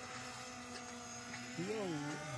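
Faint, steady hum of a small quadcopter drone's propellers, several fixed tones held at one pitch. A voice comes in briefly near the end.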